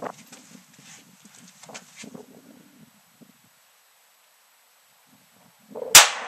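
Faint low rustling, then near quiet while aiming, then a single .22 LR shot from a Ruger Mark III pistol just before the end: one sharp crack trailing off.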